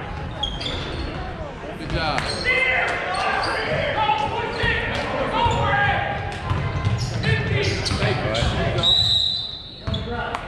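Voices calling out during an indoor basketball game, with a basketball bouncing on the court, echoing in a large gym.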